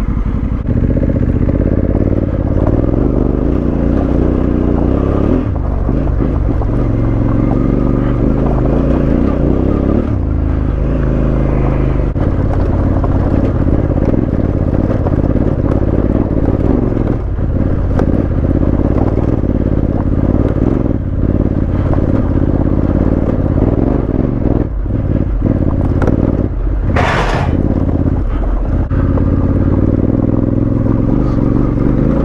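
Honda CRF1100L Africa Twin's parallel-twin engine pulling at low speed up a loose, rocky track, its note rising and falling, with stones clattering and scraping under the tyres. A brief hiss sounds near the end.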